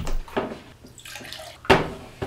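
A plastic water-filter pitcher and a drinking glass being set down on a wooden table: a couple of light thuds early on, water sloshing in the pitcher, then one sharp knock near the end as they land.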